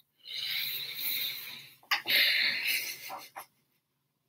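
A woman breathing out audibly into a close microphone: two long breathy exhales, each about a second and a half, with no voice in them.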